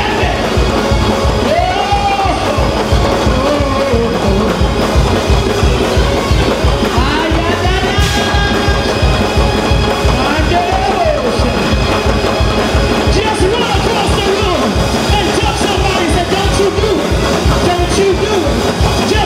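Gospel praise-break music: a fast, steady drum beat with held keyboard tones, and voices singing and calling out over it.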